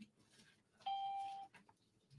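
A single electronic chime about a second in: one steady note with faint overtones that fades out after about half a second.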